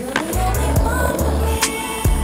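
A skateboard landing a flip trick on pavement with a sharp clack, then its wheels rolling, with another click later on, all under a soul/R&B song with a steady bass beat.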